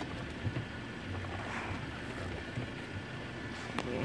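Four-cylinder 2.0 TFSI engine of a 2017 Audi A4 idling in Park, heard from the driver's seat as a steady low hum under a hiss. A single sharp click near the end.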